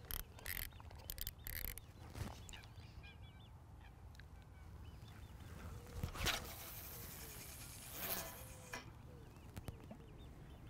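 A carp rod being cast: a sharp swish about six seconds in, then a softer hiss about two seconds later, over faint lakeside quiet with birds calling.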